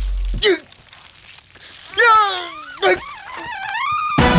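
A man wailing and whimpering in a high, strained voice after the music cuts off about half a second in: a drawn-out cry that slides down in pitch, a short yelp, then a wavering cry that rises. The cries come from a man in distress as ants crawl over him.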